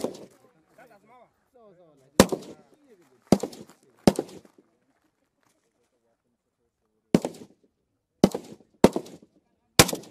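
Seven single shots from an AK-pattern rifle, fired one at a time at uneven intervals. The first comes about two seconds in, a cluster of three follows, then after a pause of about three seconds four more come close together near the end. Each crack has a short ringing echo.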